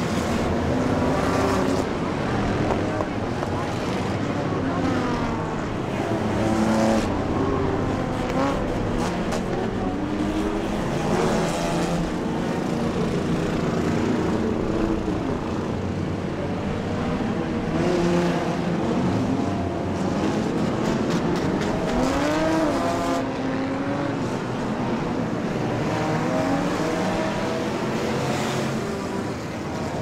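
A field of enduro race cars, old street cars, running laps together on a wet oval. Many engines are heard at once, their pitches rising and falling as cars accelerate and back off through the turns and pass by.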